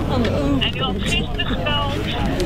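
A voice speaking through a mobile phone's loudspeaker during a call, over outdoor crowd murmur and a steady low hum.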